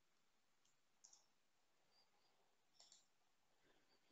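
Near silence with a few faint, scattered clicks from typing on a computer keyboard, about a second in and again near the end.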